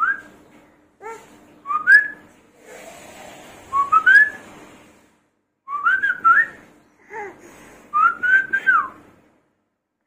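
A man whistling: several short phrases of mostly rising notes with brief pauses between them.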